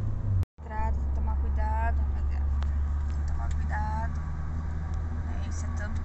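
Steady low rumble of a car's road and engine noise heard inside the cabin while driving at road speed, with a few short bits of voice over it. The sound drops out for an instant about half a second in.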